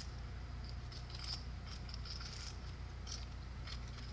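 Clay poker chips clicking against one another as a player handles and riffles a stack at the table: a run of light, irregular clicks over a steady low room hum.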